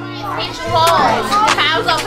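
Children chattering and calling out in a crowded room, over background music with a steady bass line; the crowd noise grows louder about half a second in.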